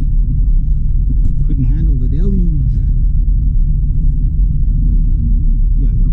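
Steady low rumble of a Honda Civic's engine and tyres heard inside the cabin while driving along a dirt road. A brief voice sound cuts in about a second and a half in.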